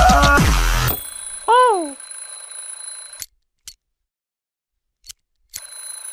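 Cartoon soundtrack from an effects edit. Loud music cuts off about a second in, over a faint hiss and steady high tones. A short cartoon voice exclamation follows, its pitch rising then falling, then a gap of near silence broken by two faint clicks.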